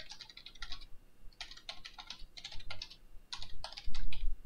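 Typing on a computer keyboard: keystrokes in quick runs with short pauses between the words.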